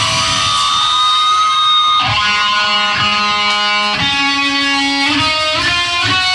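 Live rock band playing: electric guitars and bass holding chords that change about once a second, with drum and cymbal hits landing on each change.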